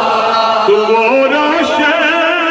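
A naat, an Urdu devotional song in praise of the Prophet, sung by a male reciter in long held notes with a wavering vibrato; the melody steps upward about a second in.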